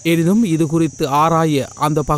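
Speech: a news narrator's voice talking in Tamil, with a steady high-pitched whine underneath it.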